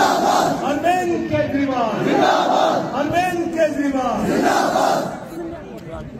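A crowd of men chanting a political slogan in unison, the shouted phrase repeating about once a second; it drops off near the end.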